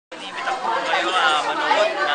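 Voices talking: speech with the chatter of several people behind it.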